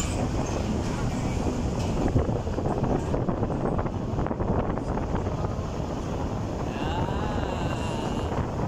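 Vehicle driving along a road with steady engine and road noise, with wind buffeting the microphone.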